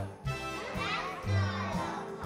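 Young children's voices singing along to music with a bass line that changes note about twice a second.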